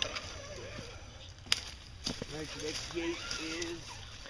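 Faint voices talking, with a single sharp knock about one and a half seconds in.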